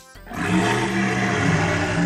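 Velociraptor roar in reply: one long, rough dinosaur roar that starts a moment in and is held for over two seconds.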